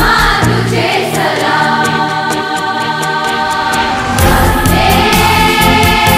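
Massed girls' choir singing long held chords over backing music. About four seconds in, bass and a beat come in and the sound grows fuller.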